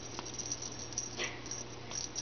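Kittens playing with a feather wand toy on carpet: light rustling and scuffling with scattered soft clicks, and a short high squeak falling in pitch a little over a second in.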